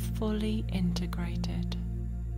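A soft spoken phrase in a woman's voice over a steady, low ambient music drone.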